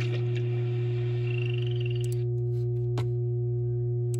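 A steady low hum. Over it, the last of a video's soundtrack, with a short wavering high tone, ends about two seconds in, and a single sharp click comes about three seconds in.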